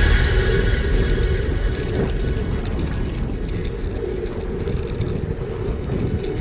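A bicycle rolling along a paved street, heard through a camera mounted on the bike: a steady low rumble from the tyres and road, with many small rattles and clicks.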